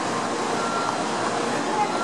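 Steady background noise of a station platform beside a stopped Shinkansen bullet train, with indistinct voices and a short faint tone a little way in.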